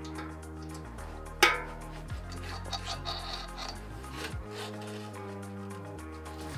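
Background music with a steady bass line, over which a hand key works the bolts of a bicycle disc brake rotor: one sharp metallic click about a second and a half in, then a few lighter clicks and scrapes.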